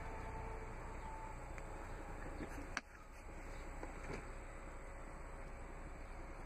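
Steady hiss, then a sharp click about three seconds in and a softer click about a second later, from the Jeep Cherokee's 60-40 split rear seat being folded forward.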